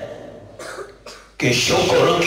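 A man coughs twice, short and dry, in a pause, then a man's amplified voice starts again about a second and a half in with a drawn-out, sung-like delivery.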